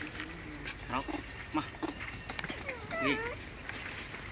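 Macaques calling: a string of short high squeaks and chirps, then a longer wavering squeal about three seconds in.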